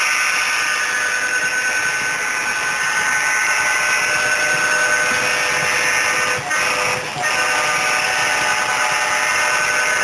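HO-scale model freight train running past close by: a steady, loud whir of wheels on rail and motors with several steady high tones through it, dipping briefly twice about six and seven seconds in.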